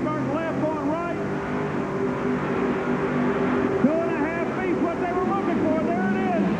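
Multi-engine modified pulling tractor running hard under load as it drags the weight sled, its engines' pitch repeatedly rising and falling.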